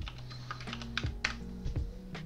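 A few sharp clicks at a computer as the file is saved, over soft background music of held notes that change pitch twice.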